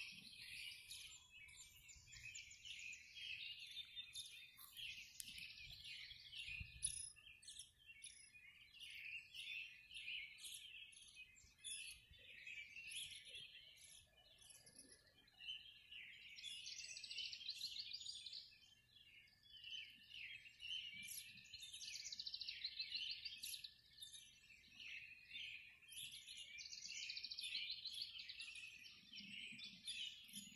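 Faint dawn chorus of many small birds chirping and singing, their calls overlapping almost without a break.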